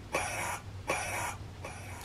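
Three short bursts of hissing static, each under half a second, from a spirit box running a necrophonic session.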